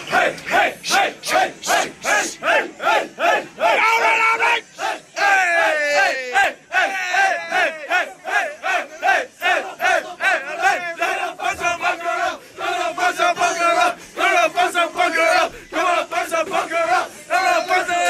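A group of teenagers shouting a chant together in a fast, even rhythm, about three shouts a second, then holding long shouted notes in unison.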